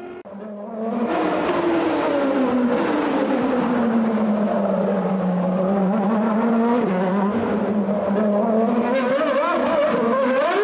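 Formula 1 car's engine running, its pitch sliding down over the first few seconds, holding low, then climbing again near the end.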